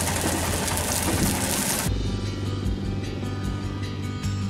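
Background music over the steady hiss of a wood fire burning under a spit roast, which cuts off about two seconds in. A low motorcycle engine rumble follows.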